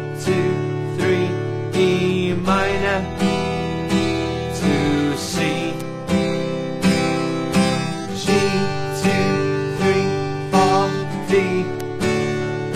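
Yamaha acoustic guitar strummed in a steady rhythm, changing chords through the G, D, E minor progression, a bar on each chord.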